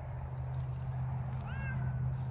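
A faint, short kitten meow, rising then falling in pitch, about one and a half seconds in, over a steady low hum.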